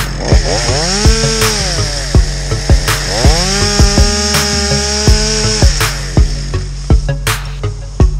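Chainsaw revving up twice: a short burst about a second in, then a longer rev held for about two and a half seconds from about three seconds in, each time rising in pitch and falling off again. It plays under background dance music with a fast, steady beat.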